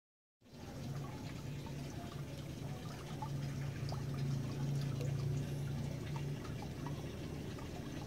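Aquarium water trickling and dripping, with small splashes and a low steady hum under it that fades about two-thirds of the way through.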